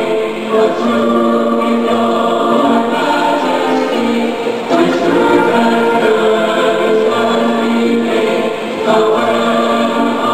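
A choir of many voices singing a slow piece in long held notes.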